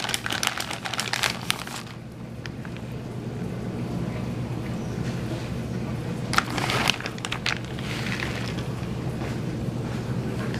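Crinkling, rustling handling noise in two bursts, one at the start and another about six seconds in, over a steady low hum.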